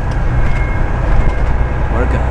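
Steady low rumble and running noise heard from inside a moving passenger vehicle.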